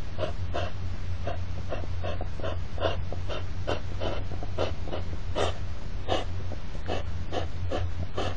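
Hedgehogs' courtship snorting: short, rapid huffs repeated about two to three times a second without a break. A steady low hum runs underneath.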